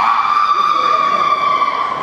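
A man's long, high-pitched scream: it jumps up in pitch at the start, then is held for about two seconds, sagging slightly.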